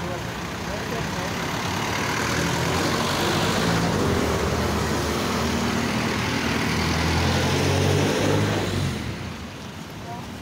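A motor vehicle's engine running close by, growing louder over several seconds and fading about nine seconds in as it passes.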